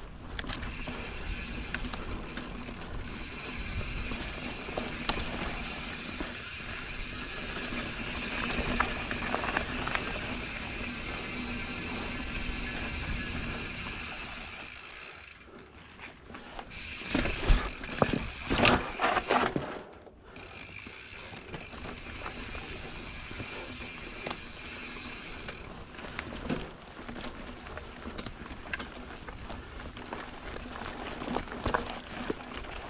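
Mountain bike's rear freehub buzzing steadily as the bike coasts down a dirt singletrack, over the rustle of the tyres. Just past halfway the buzz drops out briefly, then a run of loud knocks and clatter follows as the bike rattles through a rock garden.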